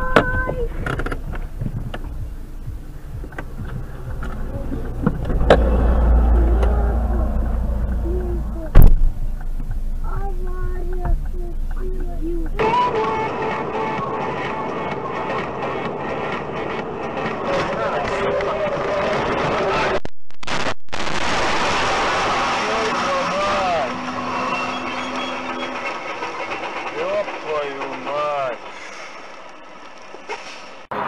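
In-car dashcam sound: steady road and engine noise with voices, a heavy rumble, and one loud sharp bang about nine seconds in.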